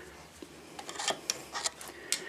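A few light, sharp clicks and taps of metal on metal, scattered from about half a second in, as an aftermarket Oberon foot peg is worked in its mounting bracket on a motorcycle frame.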